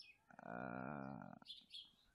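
A man's voice holding a drawn-out hesitation vowel, 'a…', for about a second, the pause of someone searching for a word.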